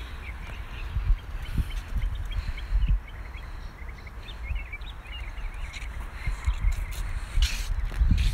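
Faint bird chirps over a steady low rumble of wind on the microphone, with a few soft bumps.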